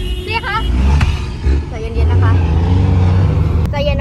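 Low rumble of a taxi's engine and road noise heard from inside the moving cabin, strongest in the second half, with brief bits of passenger speech and a single sharp click about a second in.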